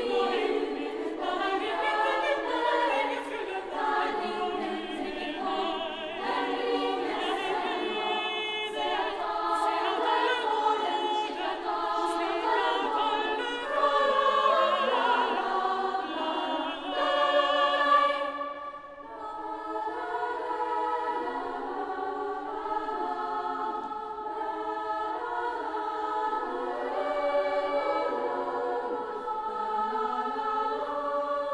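Girls' choir singing a contemporary choral work in many overlapping voice parts, high voices only. Just before two-thirds of the way through, the singing briefly drops in level and thins out, then carries on more softly.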